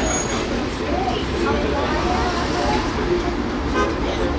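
Steady low rumble of a moving aerial tramway cabin, heard from inside the car as it travels along its cables.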